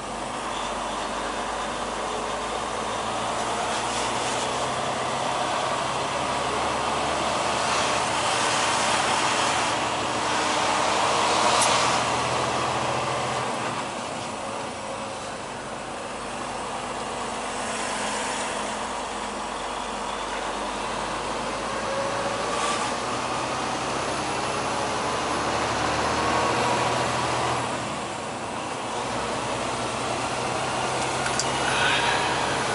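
Semi truck's diesel engine and road noise heard from inside the cab while driving. The engine note rises and falls several times as the truck changes speed.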